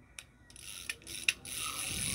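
Small Daiwa size-700 spinning reel being worked by hand: a few sharp mechanical clicks, then a steady whirring of the gears and rotor as the handle is turned.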